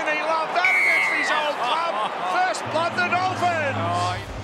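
Several men's voices talking over one another on the broadcast, with a low steady music tone coming in about two-thirds of the way through as the try replay graphic begins.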